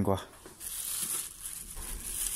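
Plastic packaging crinkling as it is handled, a steady hissy rustle starting about half a second in.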